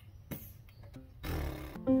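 A person sighing heavily about a second in, one long, breathy exhale, as if from frustration. Near the end, a chord starts on an electronic keyboard.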